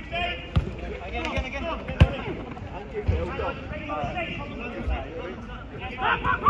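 A football being kicked and bouncing on an artificial pitch: a few sharp thuds, the loudest about two seconds in. Players are shouting and calling across the pitch.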